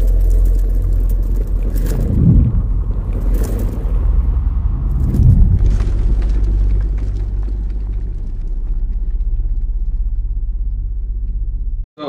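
Cinematic logo-intro sound effect: a deep, steady bass rumble with whooshing hits about two and about five seconds in. It thins out in the second half and cuts off suddenly near the end.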